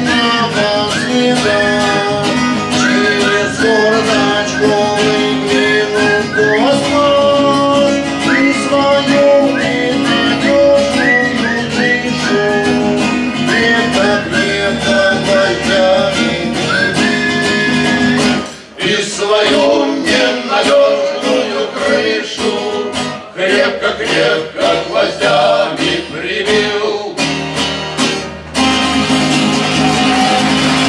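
Two acoustic guitars playing together, with a held high melody line sliding up into each note over them for the first half. About two-thirds in it drops out briefly, then the guitars carry on in choppier plucked and strummed figures before the held line returns near the end.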